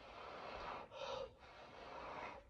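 A person blowing hard through the lips onto wet acrylic pour paint to push it out into bloom shapes: long rushing breaths, broken about a second in by a quick intake of breath.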